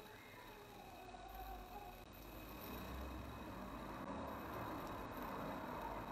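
Quiet room tone: a faint steady hiss with a low rumble that swells a little in the middle and a faint high steady hum.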